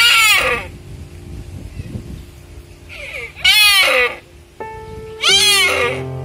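Three short deer calls, each about half a second, rising then falling in pitch, the first at the start, the others about three and a half and five seconds in, over steady background music.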